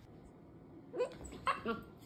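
Bernese Mountain Dog puppy giving three short barks, the first about a second in with a rising pitch, the other two close together near the end.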